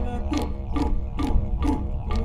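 Didgeridoo drone with clapsticks keeping a steady beat about twice a second. Four short rising hoots sound over the drone, about half a second apart.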